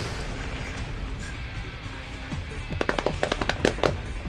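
Anime film soundtrack from a fight scene: background music, then about three seconds in a rapid volley of sharp cracks and impacts, eight or more in just over a second.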